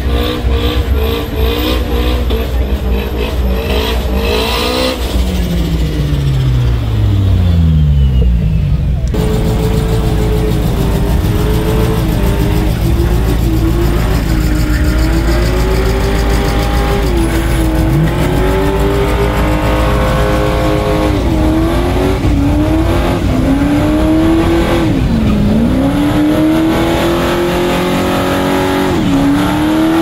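American muscle car engine at high revs during burnouts, rear tyres spinning. The revs are held high, then fall away slowly about five seconds in; after an abrupt change about nine seconds in, the engine is revved up and down over and over, dipping every few seconds.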